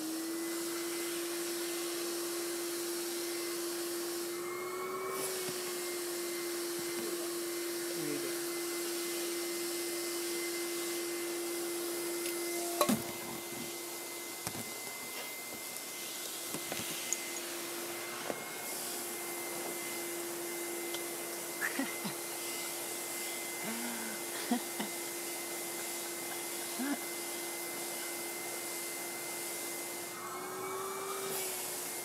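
Vacuum cleaner running steadily with a constant hum and high whine as its hose nozzle is worked over a cat's fur. The pitch lifts briefly a few seconds in, and a few sharp knocks come through from about halfway.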